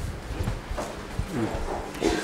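Footsteps on a hard tiled floor, an irregular series of low thuds and light knocks while walking, with faint voices in the background.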